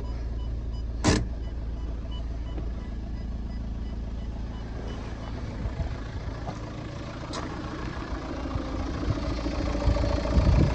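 A 2005 Ford Galaxy's 1.9-litre diesel engine idling steadily, first heard from inside the cabin. A sharp click comes about a second in as the automatic gear selector is handled, and a smaller click follows later. The idle grows louder near the end as the microphone moves out to the front of the car.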